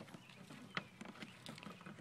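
Labrador puppies scrabbling about a plastic wading pool: faint, scattered taps and clicks of paws and claws.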